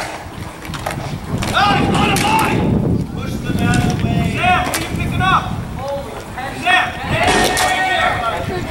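Players and onlookers shouting at a dek hockey rink, with sharp knocks of sticks and ball as players scramble in front of the goal.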